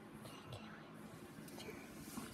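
Faint whispering.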